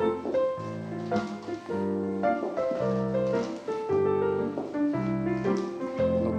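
Piano accompaniment for a ballet barre exercise, played as chords on a steady beat, a little under two a second.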